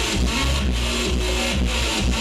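Loud electro house dance music from a DJ set, played over a club sound system: heavy sustained bass with distorted synths and a steady beat, a little over two beats a second.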